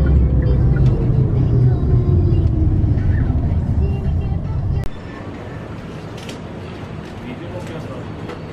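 Road noise of a moving car, a heavy low rumble with a slowly falling whine, which cuts off about five seconds in to a quieter background with faint voices.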